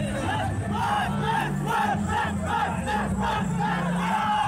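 A volleyball team huddled and chanting in unison: a quick run of shouted group calls, about three a second, as in a team cheer before play.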